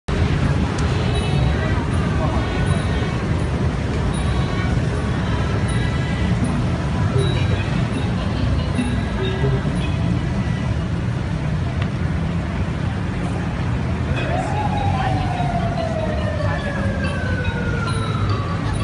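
Busy city-street ambience: a steady low traffic rumble under the chatter of a crowd. About fourteen and a half seconds in, a long tone rises briefly and then falls slowly, like a siren winding down.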